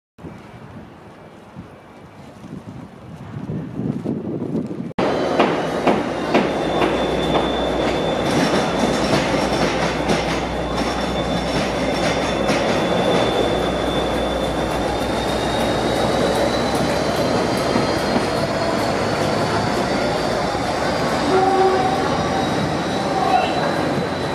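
Class 57 diesel locomotive, an EMD two-stroke V12, passing slowly at close range: a low steady engine note, wheels clicking over rail joints and pointwork, and a thin high squeal that holds through the second half. The first few seconds are quieter station ambience before the locomotive comes in loud.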